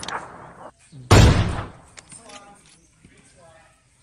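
A tennis ball struck by a racket close to the microphone about a second in: one sharp, loud pop that dies away over about half a second. Faint voices follow.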